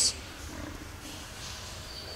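Low steady background rumble with faint hiss.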